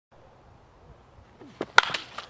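Baseball bat striking a ball in batting practice: one sharp crack with a short ring near the end, just after a fainter click.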